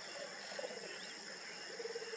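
Grassland insects calling steadily, with faint bird chirps and a short low call about half a second in and again near the end.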